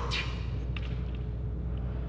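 Steady low hum of background room noise, with a few faint clicks and a brief hiss right at the start.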